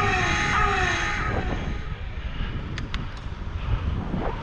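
Wind rushing over the microphone of a camera on a moving bicycle, with a low steady rumble of road noise. Music fades out over the first second or so, and two sharp clicks come close together about three seconds in.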